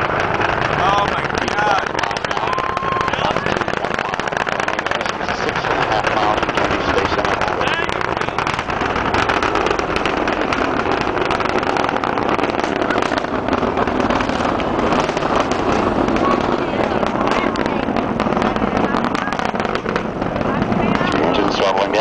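Space Shuttle launch roar from a distance: a loud, continuous rumble thick with rapid crackling from the solid rocket boosters as the shuttle climbs. Faint voices sound underneath.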